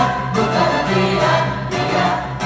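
A stage-musical chorus singing held notes over instrumental accompaniment.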